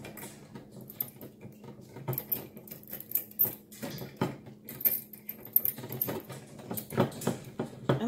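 Small metal clicks and rattles as a steel quick-link and chain are twisted onto the top of a stainless steel wire-cage foraging toy. Irregular light taps run throughout, with a few sharper clicks in the second half.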